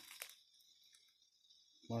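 Near quiet between phrases of speech: faint forest ambience, with a single faint click just after the start. A man's voice starts again near the end.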